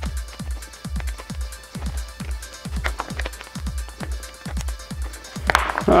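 Electronic background music with a steady kick-drum beat, each kick dropping in pitch.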